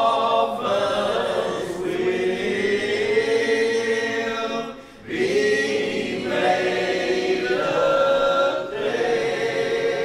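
A group of voices singing a hymn in long, held notes, with a brief break between phrases about five seconds in.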